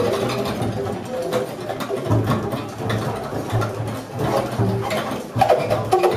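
Freely improvised acoustic trio music: a bowed double bass, an archtop guitar and a saxophone trade short, scattered notes and clicks with no steady beat. Low bass tones come in about two seconds in.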